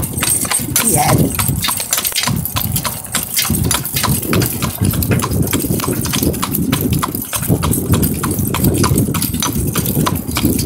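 Hooves of a draft horse walking at a steady pace on a gravel road, about four hoof strikes a second, over the low rumble of the three-wheel cart it is pulling rolling over the gravel.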